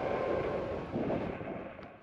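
Wind rushing over the microphone, with a steady outdoor road noise beneath it, fading out near the end.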